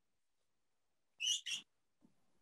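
Two short, high-pitched chirp-like animal calls in quick succession about a second and a half in, from a pet in one of the call participants' rooms.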